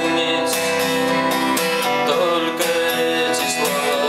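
Steel-string acoustic guitar strummed in a steady rhythm, with a man singing over the chords.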